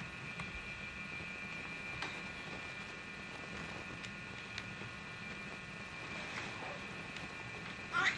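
Quiet room tone with a steady, faint high-pitched whine of several thin tones and a few faint clicks.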